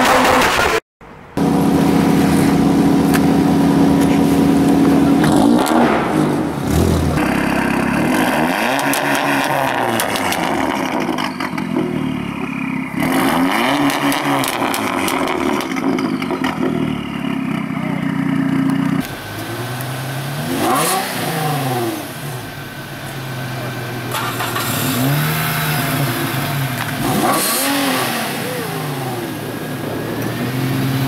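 Several cars' engines revved from behind at the exhaust, one short clip after another. Each engine idles between quick blips, its pitch rising and falling with every rev, and the sound changes abruptly a few times as one car gives way to the next.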